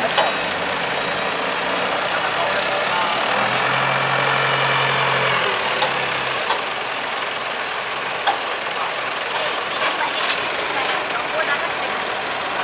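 Wheel loader and forklift engines running steadily while the bales are handled, with a low steady hum that holds for about two seconds in the middle and a few light clicks near the end.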